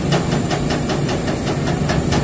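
JCB tracked excavator's diesel engine running steadily, with a quick ticking at about six ticks a second over the low hum.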